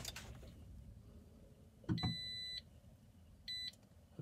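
Toyota RAV4 EV dashboard chime as the car is switched back on into Ready: a click about two seconds in, then a high beep lasting about half a second, and a shorter beep near the end. This is part of cycling the car off and on to clear a check-EV-system warning.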